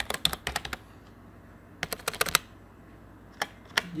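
Computer keyboard typing in three short bursts of quick keystrokes: one right at the start, one about two seconds in, and one near the end.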